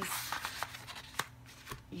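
Sheets of printed paper rustling as they are handled and flipped, loudest at the start, with a couple of sharp light taps about a second in and near the end.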